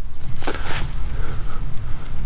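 Wind buffeting the microphone in a low rumble, with the rustle of work gloves rubbing soil off a small thin coin between the fingers, a brighter hiss about half a second in.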